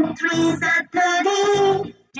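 A multiplication-table song for children: a voice sings the ten times table over music in two long phrases with held notes.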